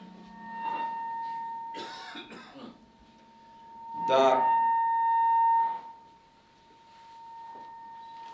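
A steady high-pitched ringing tone held at one pitch, typical of microphone feedback through a public-address system, swelling loudest about four to six seconds in.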